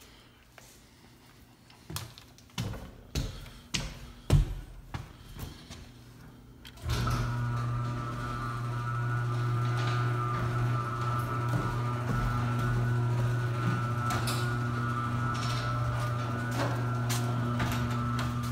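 A few scattered knocks and clicks, then an electric garage door opener starts suddenly about seven seconds in and runs steadily, a low motor hum with a higher whine over it.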